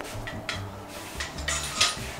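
Metal clothing rack and its hangers rattling and clinking as the rack is lifted and carried, in a few short clatters with the loudest near the end.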